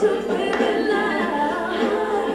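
Vocal music: several voices singing together, with no beat.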